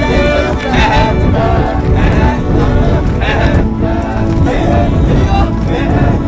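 A group of Maasai men chanting and singing together in short, rising-and-falling phrases as they dance in procession, with wind rumbling on the microphone.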